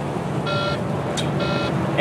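Semi truck's dashboard warning buzzer sounding short, high beeps about once a second, two in this stretch, over the steady low rumble of the running engine in the cab. The alarm goes with a Stop warning for a MID 137 failure and would not clear after restarts and a system reboot.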